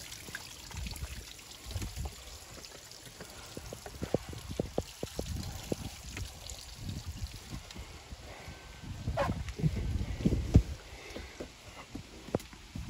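Water from a garden hose hooked to a sterndrive trickling and splashing steadily, with a run of footsteps and knocks on a wooden swim platform as a person climbs aboard a boat, and louder thuds around nine to ten seconds in.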